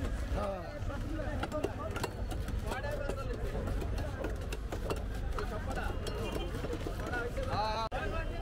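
Several voices talking in a busy fish market over a steady low rumble, with scattered sharp knocks and clicks from fish being cut on bonti blades.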